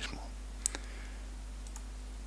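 A computer mouse button clicked: one sharp click a little over half a second in, a fainter click right after, and a couple of faint ticks near the end.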